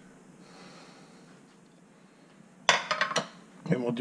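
Faint room tone for most of the time, then short breathy vocal sounds from a man near the end.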